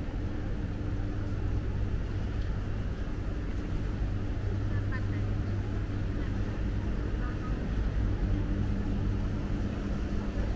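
Steady low hum of an airport terminal hall, with faint distant voices now and then.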